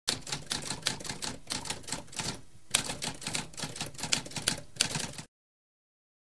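Typewriter typing: a fast run of keystroke clacks with a brief pause about halfway, stopping a little after five seconds in.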